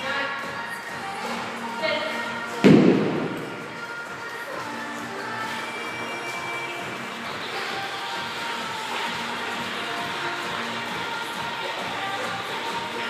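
A kettlebell dropped onto rubber gym flooring: one heavy thud about three seconds in, over steady background music.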